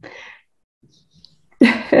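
A woman's faint breathy exhale, then a sudden, loud, breathy burst of laughter near the end. She is choked up with emotion.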